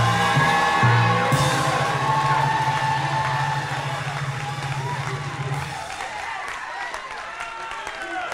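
Live worship music with sustained keyboard chords and a low bass note under voices singing and calling out. The bass drops out about six seconds in, leaving the fading chords and congregation voices.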